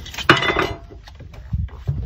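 Clattering knocks and clinks of hard objects: a sharp click, then a loud ringing clatter a quarter second in, then two dull thumps near the end.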